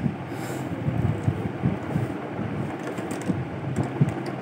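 Lightweight plastic toy dishes and cups knocking and clattering softly as they are handled in a plastic drying rack, over a low uneven rumble, with a few small clicks.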